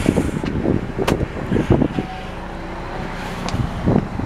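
Camera handling noise as the camera is carried: irregular knocks and rustles, with a sharp click about a second in, over a steady low hum.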